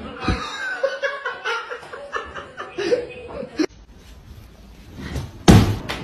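A person laughing in repeated bursts for about three and a half seconds, cut off suddenly, followed near the end by a single loud thump.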